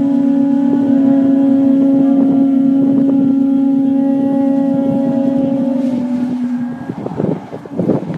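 Conch shell trumpet (pū) sounding one long, steady note that wavers and breaks into short uneven blasts about seven seconds in.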